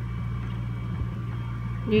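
A steady low hum, with a faint click about a second in.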